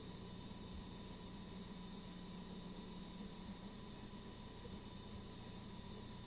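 Faint, steady background hum: a low drone with thin, constant high tones over it and no distinct events.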